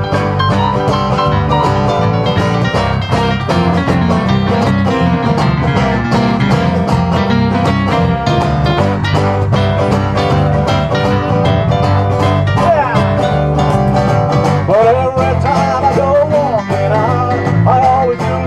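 Live acoustic country-rock band playing an instrumental passage: two strummed acoustic guitars, electric bass and keyboard. A bending, wavering melody line comes in over the chords in the last few seconds.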